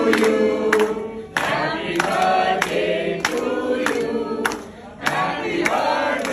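A group of people singing a Hindi song together, with hand claps roughly every half second. The singing dips briefly twice.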